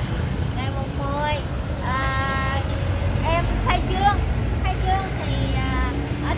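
A high-pitched voice singing, with long held notes and gliding phrases, over a steady low rumble.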